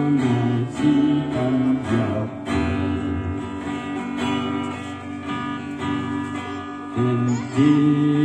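Acoustic guitar strummed as accompaniment to a man singing in long, held notes.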